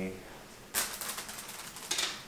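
A cat treat thrown down onto a tiled floor, its small hard pieces clattering and skittering across it. It starts with a sharp hit about three quarters of a second in and goes on as a quick run of light clicks for about a second, with one sharper click near the end.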